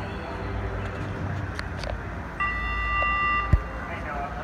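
An electronic start-clock beep at the pursuit start gate: one steady, long tone about a second and a half long, starting a little past halfway. A single sharp thump comes just before the beep stops, over a steady low hum.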